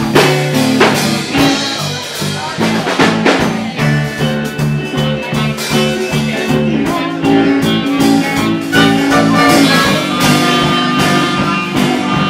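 Live band playing a blues-rock number: electric bass, electric guitar and drum kit with a steady beat.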